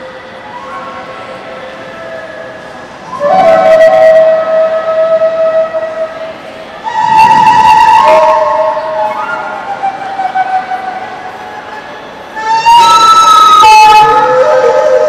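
A flute-like wind instrument playing a slow melody of long held notes that step from one pitch to the next, swelling much louder three times, about 3, 7 and 12.5 seconds in.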